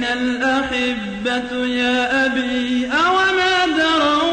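A single voice chanting unaccompanied in a Middle Eastern melodic style, holding long notes and sliding between them, with a rising slide about three seconds in.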